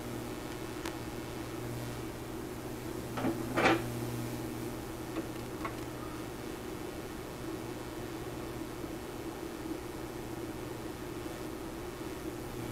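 Handling sounds of a micrometer being set against a small turned steel pin on a lathe: a faint click, a brief louder knock about three and a half seconds in, then a couple of light ticks, over a steady low hum.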